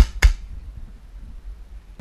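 Two sharp shots from an airsoft pistol, about a quarter of a second apart.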